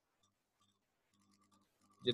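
Near silence: a pause in a lecturer's speech.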